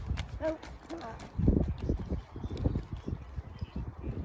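Hoofbeats of a ridden horse trotting on an arena surface, a steady rhythm of hoof strikes.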